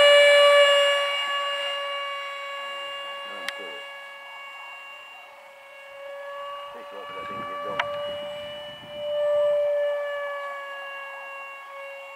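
Hobbyking Sonic 64's 64 mm electric ducted fan whining at a steady high pitch just after a hand launch. It is loudest at first, fades as the jet climbs away, swells again about nine to ten seconds in as it passes closer, then fades.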